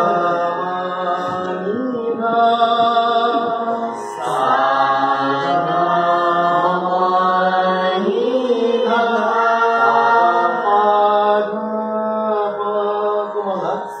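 A group of voices singing a slow, chant-like melody together, holding long notes and stepping from pitch to pitch every second or two over a steady low drone. The singing dips briefly about four seconds in.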